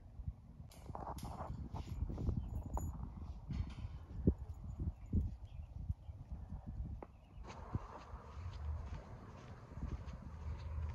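Irregular knocks and clicks from work on a wooden frame and welded-wire cattle panel. About two-thirds of the way through this gives way to wind buffeting the microphone.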